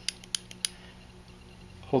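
Three light clicks in the first second from Delphi-style crimping pliers being handled, as their connector-locking device is worked, over a faint steady hum.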